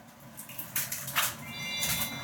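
A few soft rustling swishes, then a short, high, bell-like chime of several steady tones about a second and a half in, a twinkle sound effect added in editing.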